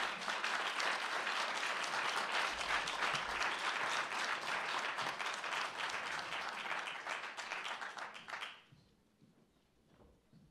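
Audience applauding, a dense steady clapping that cuts off abruptly about eight and a half seconds in.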